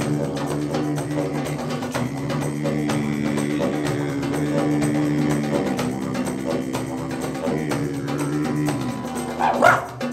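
Didgeridoo drone, low and continuous with shifting overtones, over a rhythm of djembe hand drums. Near the end a short yelp-like cry rises and falls above the drone.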